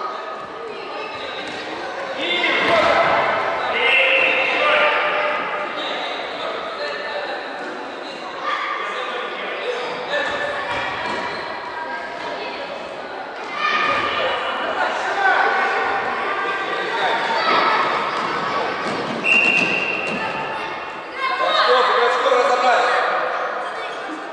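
Children's high-pitched shouts and calls ringing through a large echoing sports hall, with a few sudden thuds of a futsal ball being kicked and bouncing on the wooden floor.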